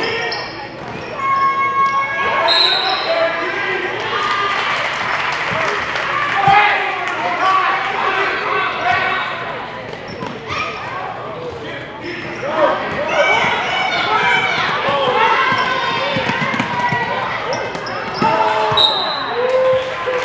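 Basketball bouncing on a hardwood gym floor during a youth game, with spectators' and players' voices echoing in the gym throughout.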